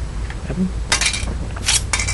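Light clicks and clatter of a plastic Nutella snack pack being handled, in two short bursts about a second in and near the end.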